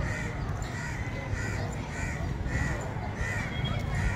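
Crows cawing over and over, short similar calls about two a second, over a low steady rumble.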